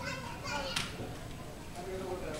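Children's high-pitched voices chattering and calling, strongest in the first second and again near the end, over steady low background noise.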